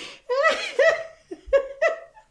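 A woman laughing helplessly, in fits: a breathy gasp, then about four short, high, wavering bursts of laughter.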